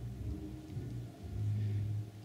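Low, steady electrical hum from the running bench equipment, getting louder about halfway through.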